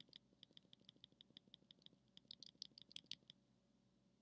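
Faint, rapid ticking of a computer mouse's scroll wheel as a web page is scrolled, several ticks a second in uneven runs, stopping shortly before the end.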